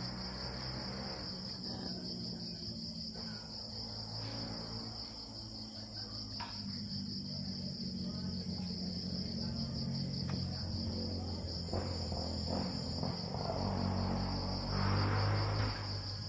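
Crickets chirping in a steady, continuous high-pitched chorus, with a low steady hum beneath. A few light clicks and some rustling come from a metal gun receiver being handled, busiest near the end.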